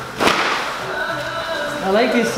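A barber cape flicked open with one sharp crack about a quarter second in, then background music.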